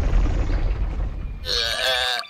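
Cartoon sound effect of a giant stone boulder rolling, a heavy low rumble that eases off after about a second and a half, followed near the end by a short pained cry.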